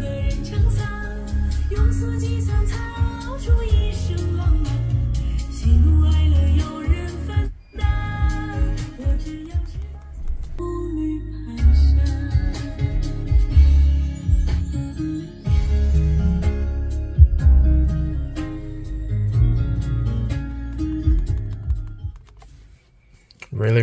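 A song with singing and strong, full bass played through the Smart #3's Beats sound system, heard inside the car's cabin as a speaker test; the sound is clear, with a brief gap about seven and a half seconds in.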